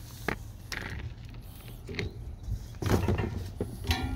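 Quiet outdoor background with a steady low rumble and a few scattered faint clicks and rustles.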